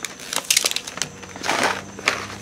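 Seed packets and their packaging rustling and crinkling as they are handled, with irregular crackles and two louder bursts about half a second and a second and a half in.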